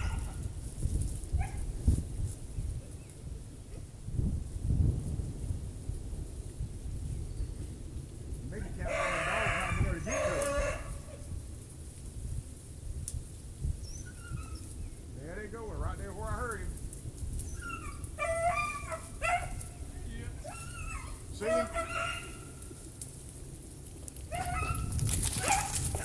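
Beagles baying as they run a rabbit through the briars: one long bawl about a third of the way in, then a string of shorter bays later on, over a low rumble.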